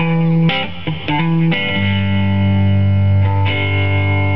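Guitar playing an instrumental passage of a song between sung lines: a few quick chord changes, then one long chord left to ring.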